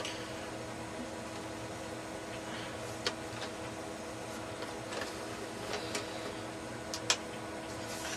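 A few sharp clicks and light plastic handling noises from a Memorex DVD player as its front-panel buttons and eject mechanism are worked, over a steady low hum.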